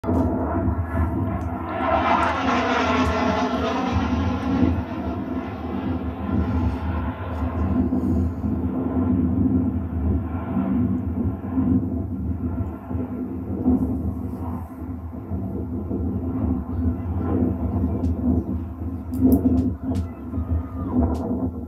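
Harrier jump jet's Rolls-Royce Pegasus turbofan heard in flight overhead. The jet noise is loudest and hissiest from about two to seven seconds in, with a swirling, phasing sweep, then settles into a lower, steadier rumble.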